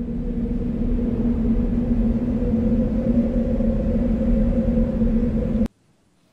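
Dramatic sound-effect drone: a low rumble with a steady hum, swelling up over the first second, holding, then cutting off suddenly near the end.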